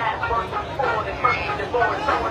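Talking voices over the low engine rumble of a race car waiting at the start line.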